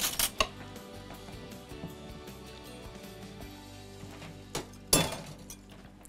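Quiet background music, with sharp clinks of a metal utensil against a glass mixing bowl right at the start and again about five seconds in.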